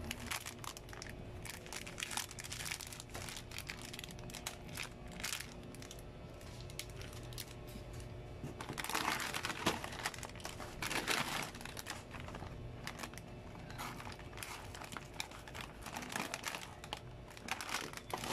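Plastic snack-chip packets crinkling as they are handled and lifted out of a cardboard box, in irregular bursts that are loudest about halfway through.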